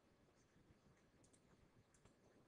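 Near silence, with a few faint clicks in the second half.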